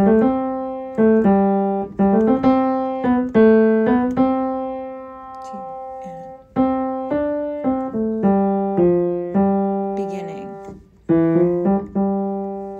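Piano playing the tenor and bass parts of a choral arrangement, two-voice chords struck about every half second and left to ring and fade. About four seconds in, one chord is held and dies away before the playing picks up again.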